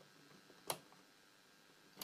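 Near silence in a small room, broken by one sharp click a little under a second in.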